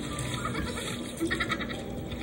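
High-pitched giggling, a quick run of short, evenly repeated pulses just past the middle.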